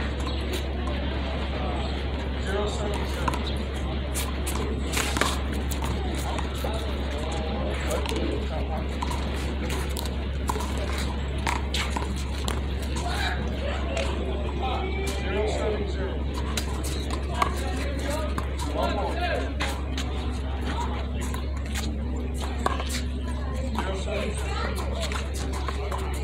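Background voices and chatter over a steady low hum, broken a few times by single sharp smacks, most likely a small rubber handball struck by a gloved hand and hitting a concrete wall.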